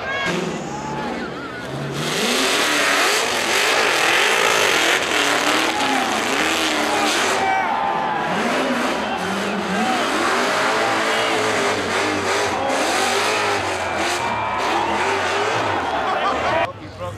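Rock-bouncer buggy engine revving on a rock climb, mixed with a crowd of spectators shouting and cheering; the sound swells about two seconds in and stays loud.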